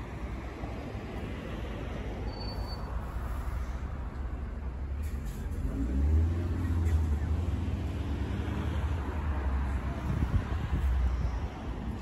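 Road traffic passing on a street, with a truck's low engine rumble swelling about six seconds in and running on until near the end.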